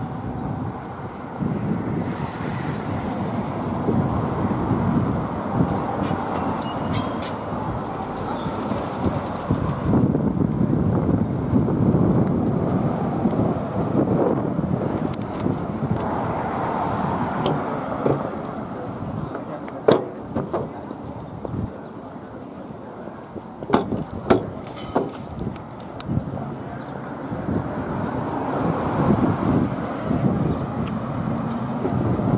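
Street ambience with wind buffeting the microphone, passing car traffic and people's voices. The sound changes abruptly a couple of times. A few sharp knocks come in the second half.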